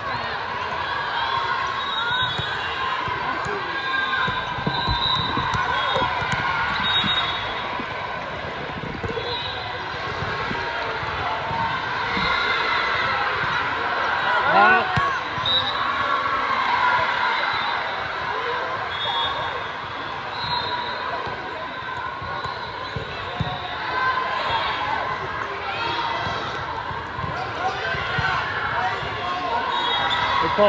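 Busy indoor volleyball-hall ambience: many voices chattering at once, with sneakers squeaking on the court and occasional thumps of the ball being hit, all echoing in the large hall.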